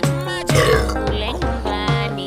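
Background music, with a long, rough burp over it starting about half a second in and lasting about a second.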